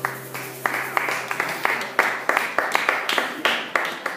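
A small audience clapping after a song, the individual claps distinct and irregular, several a second.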